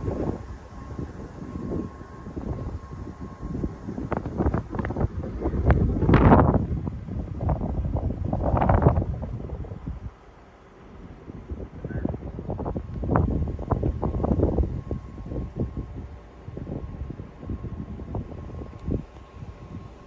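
Wind buffeting the microphone in uneven gusts, with a brief lull about halfway through.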